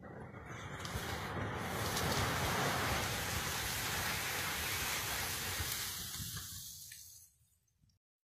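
A mass of heavy snow sliding off a corrugated metal roof and tumbling to the ground: a rushing hiss that builds over the first two seconds and dies away about seven seconds in.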